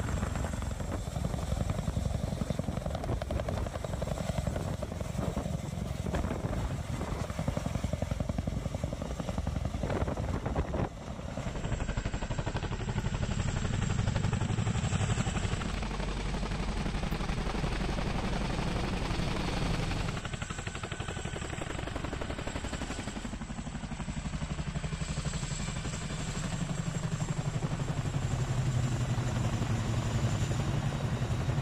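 Boeing CH-47 Chinook twin-turbine, tandem-rotor helicopter running at a hover and in flight while carrying an underslung Humvee: steady fast rotor beat over turbine noise. The sound breaks off and changes abruptly about eleven seconds in, and shifts again around twenty seconds.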